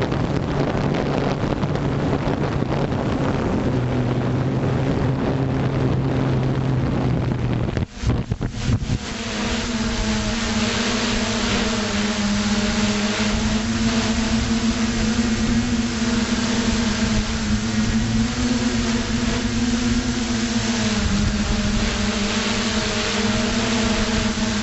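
FPV drone's electric motors and propellers humming steadily, heard from the onboard camera with wind on the microphone. The hum drops out for a moment about eight seconds in, then comes back stronger and steadier.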